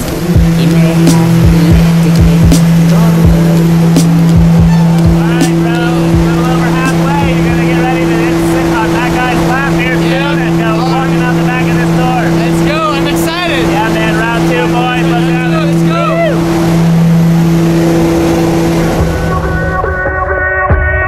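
Propeller airplane heard from inside the cabin in flight, a loud steady drone: a deep hum with a second tone an octave above it. Voices talk and call out over it through the middle of the stretch.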